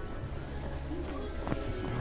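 Shop ambience: in-store background music under low indistinct voices, with one sharp click about one and a half seconds in.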